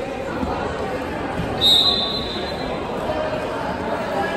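Referee's whistle: one short high blast about a second and a half in, the signal to start wrestling from the referee's position. Background chatter echoes in a large hall.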